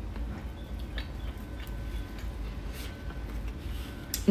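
Soft chewing of a mouthful of burger and bun, heard as a few scattered faint clicks and mouth sounds over a low steady room hum.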